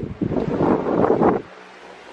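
Rough rushing of air buffeting the phone's microphone for about a second and a half, then it cuts off suddenly, leaving a faint low steady hum.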